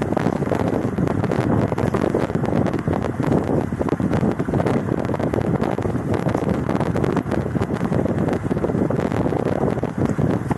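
Wind buffeting the microphone, with the pool's water moving and splashing beneath it.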